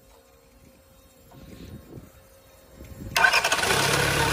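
A FAW 498 four-cylinder turbo diesel engine on a test stand is started: quiet for the first three seconds, then it fires and goes straight into a loud, steady run. It is a test start of a used engine, and it catches at once.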